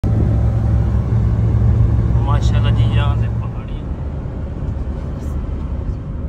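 Steady low road and engine rumble heard inside a moving car's cabin, easing slightly about three and a half seconds in. A voice speaks briefly a little past two seconds in.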